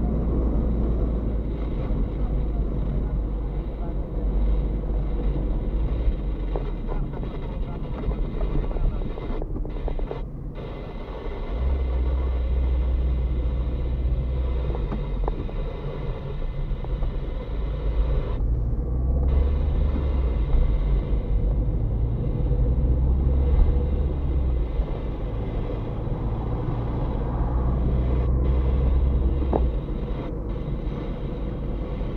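Car cabin noise while driving: a steady low engine and road rumble heard from inside the car, easing briefly about ten seconds in and then growing louder again as the car picks up speed.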